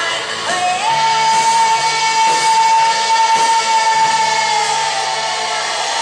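Live rock band playing, with a female singer sliding up into one long high held note about a second in and sustaining it for about four seconds over guitar and drums.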